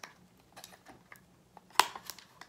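Faint plastic clicks and handling noise as fingers work the small port door of a Canon VIXIA HF W10 camcorder, with one sharp click near the end.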